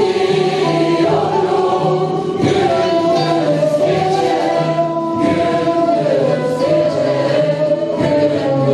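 Mixed choir singing a Turkish folk song (türkü) in unison, accompanied by frame drums and traditional Turkish instruments: ney, kanun, kemençe and bağlama.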